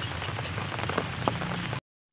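Heavy rain falling on a pond and the wet grass around it: a steady hiss of rain with scattered drop clicks. It breaks off suddenly just before the end.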